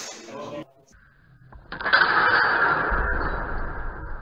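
Steel training longswords clashing: a sharp clash at the start, then from about two seconds in a louder, longer noise as the two fencers close into a bind.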